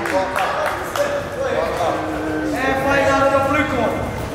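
People's voices talking and calling out, with one long drawn-out call in the second half.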